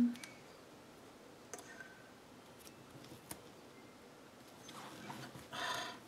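Fingers handling a paper planner sticker on the page: a few faint ticks and taps, then a louder rasping scrape of paper lasting about half a second near the end.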